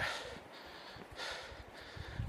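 A man's faint breath while walking with a heavy backpack, one soft noisy exhale about a second in over a low, steady background hiss.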